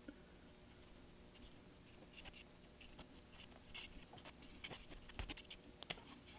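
Faint light scratching of a small paintbrush dry-brushing black paint along a model building's foundation, with scattered soft ticks and taps that get busier after about two seconds, the loudest tap near the end.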